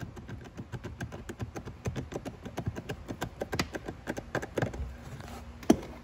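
A T25 Torx bit driver tightening a screw into a plastic trim panel: a quick series of light clicks, several a second, then one louder click near the end.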